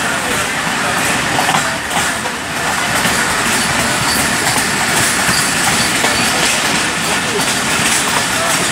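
A passenger train running along the track, heard from inside the coach by the window: a steady rush and rumble of wheels on rails and wind.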